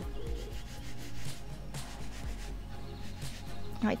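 Pizza dough rubbing and shuffling on a wooden pizza peel as the peel is jiggled to check that the pizza slides off, over a steady low hum and faint background music.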